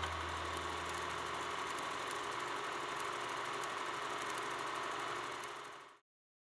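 A small machine running steadily with a fine, rapid clatter. It fades out in the last half-second.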